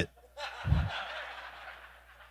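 Congregation laughing briefly at a joke. The laughter swells about half a second in, with a soft low thump, and fades out.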